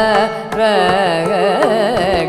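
Carnatic classical vocal with violin accompaniment over a tanpura drone: the singer and violin move together through a melodic line with heavy oscillating ornaments (gamakas). Drum strokes are almost absent here.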